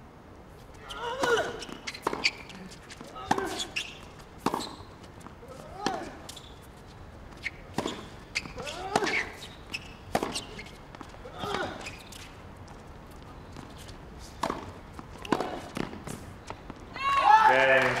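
Tennis rally on a hard court: ball struck by rackets and bouncing, a sharp hit about every second, with short pitched sounds among the hits. Near the end the rally stops and applause and cheering begin as match point is won.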